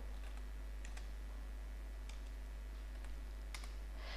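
Faint computer keyboard typing: a handful of soft, scattered key clicks over a steady low hum.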